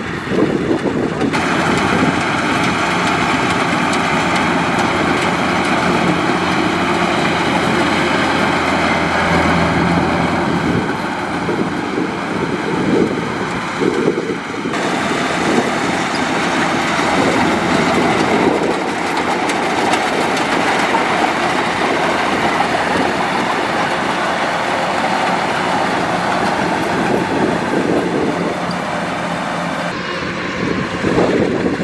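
Kubota DC-105X combine harvester running while it cuts and threshes rice: a loud, steady mechanical din of engine and machinery. The sound changes abruptly about a second and a half in and again about halfway through.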